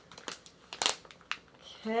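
A packet of makeup remover wipes being handled and opened: a few short crinkles and crackles of the packaging, the loudest a little under a second in.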